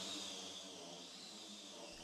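Handheld electric disc sander running steadily on a wooden desk top, a steady hissing whir that eases slightly in level.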